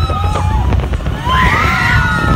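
Roller coaster car rumbling and clattering along its track, with riders screaming over it; a louder scream rises about a second and a half in.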